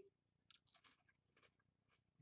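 Faint crunching of a Cheez-It cheese cracker being chewed, a few short crisp crunches spread through the moment.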